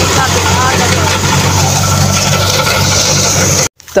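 An engine running steadily with a low hum, faint voices over it; the sound stops abruptly shortly before the end.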